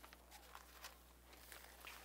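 Near silence: room tone with a low steady hum and a few faint soft ticks from book pages being handled.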